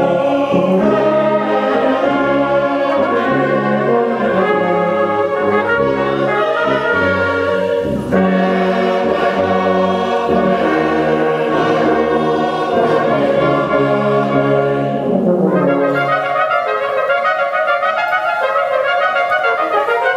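Brass band of cornets, euphoniums and tubas playing a hymn, with a congregation singing along. A little past halfway the low brass drops out, leaving the cornets and upper brass playing on their own.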